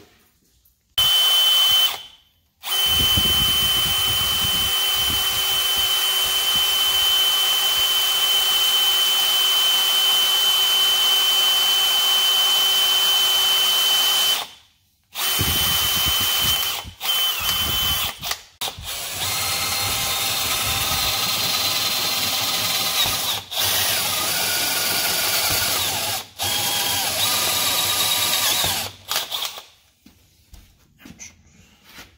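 Cordless drill boring a hole through a metal bracket clamped in a bench vise. It runs in long stretches with a steady whine, stops briefly about halfway through, then runs again with several short pauses and a whine that shifts in pitch.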